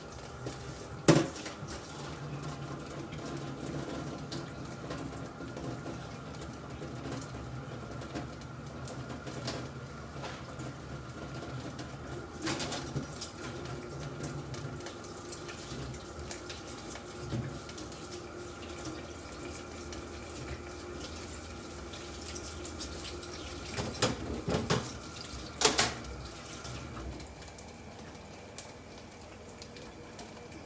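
Kitchenware clattering off and on over a steady faint hum: a sharp clink about a second in, a softer one near the middle, and a short run of clinks and knocks a few seconds before the end.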